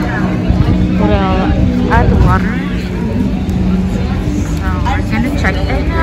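Indistinct voices talking in short stretches over a steady low hum and rumble.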